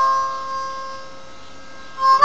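Nickel-plated diatonic harmonica in C holding one long note at the end of a phrase, fading away over the first second or so and trailing off faintly.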